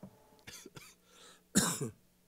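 A person clearing their throat and coughing: a few small coughs, then one loud cough near the end.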